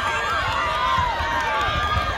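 Spectators cheering and shouting encouragement at sprinters in a race, several high-pitched voices overlapping.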